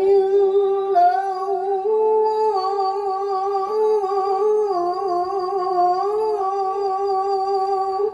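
A woman's voice chanting melodic Quran recitation (tilawah), one long held phrase with wavering, ornamented turns of pitch, breaking off right at the end.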